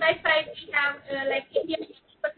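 Speech: a woman talking over an online video-call link, her words not made out.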